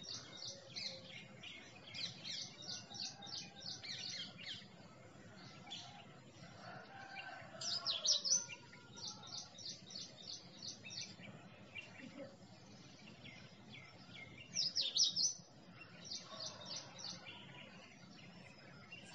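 Small birds chirping in runs of short, high notes repeated several times a second, with a louder burst of sweeping calls about eight seconds in and again near fifteen seconds.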